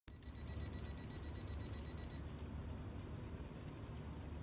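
Rapid high-pitched electronic beeping, about seven short pulses a second, for roughly two seconds, then only a steady low hum.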